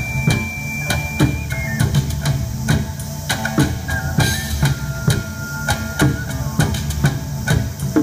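Taiko drums, shamisen and ocarina playing together live. Steady, regular drum strokes sit under plucked shamisen, while the ocarina holds long high notes that step down in pitch, with a long held note in the middle.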